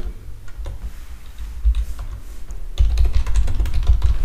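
Typing on a computer keyboard: a run of irregular keystroke clicks as a short name is entered. A low rumble sits under it and swells in the last second or so.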